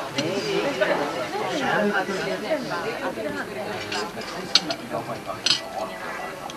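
Indistinct conversation among people at a dinner table. Near the end come two sharp clinks of tableware, about a second apart.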